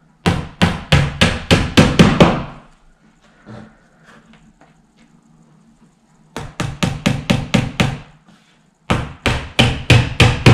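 Claw hammer tapping small nails into the fibreboard back panel of an IKEA Malm chest of drawers, in three runs of quick strikes about four a second, with a pause of a few seconds after the first run.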